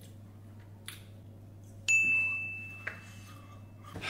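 A single bell-like ding about two seconds in: a sharp strike with a high, clear ringing tone that fades away over about two seconds, over a low steady hum.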